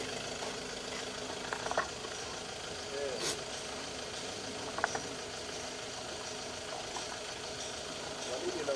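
Steady outdoor hum, like an engine idling, with faint voices in the background and a few short sharp clicks, about one and a half and five seconds in.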